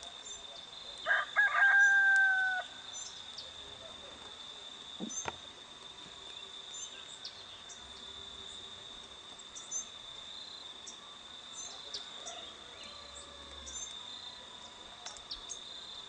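A rooster crows once, about a second in, with a choppy start and then a long held note that falls slightly at the end. A steady high insect drone runs underneath throughout, with faint short high chirps.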